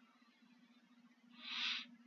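A short hiss of breath, a person drawing in air, about a second and a half in, over a faint steady low hum.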